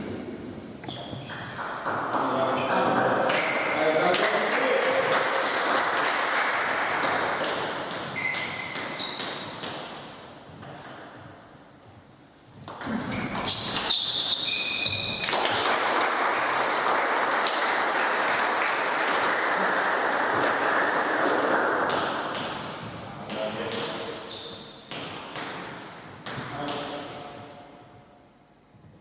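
A table tennis ball clicking off bats and the table in rallies, heard over spectators' voices. There are two long swells of crowd noise.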